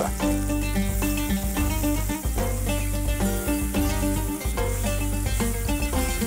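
Sliced onions frying in hot oil in a stainless steel pot, a steady sizzle, under background music with sustained notes and a bass line.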